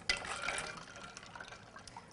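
Ice-cooled salt brine swishing as a hand stirs the ice cubes in a glass measuring jug, with a few faint clicks. The sound is loudest at the start and fades.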